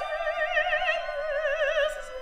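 Operatic soprano singing a long legato line with a wide, even vibrato, the pitch sinking slowly lower across the phrase.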